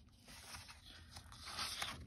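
Sheets of patterned paper rustling and sliding against each other as pages of a paper pad are turned, soft at first and a little louder near the end.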